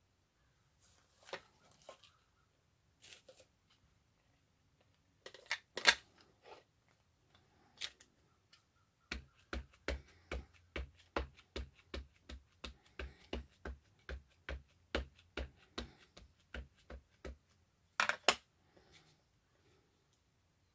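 Ink pad dabbed again and again against a rubber stamp, a run of soft even taps about three a second for some eight seconds. Before the taps come scattered clicks of craft supplies being handled, with a sharp clack about six seconds in. Near the end come a couple of louder knocks.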